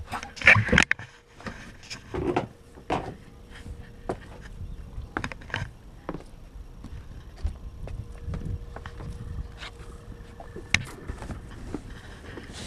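Irregular knocks, scuffs and footsteps of a person climbing out of a sailboat's cabin and walking forward along the deck, with the loudest knocks about half a second in and shortly before the end.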